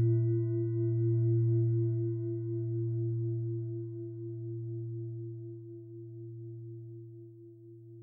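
A singing bowl rings out from a single strike and slowly fades, a deep low tone under a higher tone that wavers in a slow pulse.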